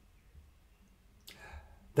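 Near silence in a man's talk, then a short breath in with a mouth click about a second and a half in, just before his voice starts again at the end.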